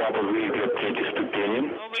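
A voice talking over a radio link, thin and telephone-like, with no words the recogniser could write down.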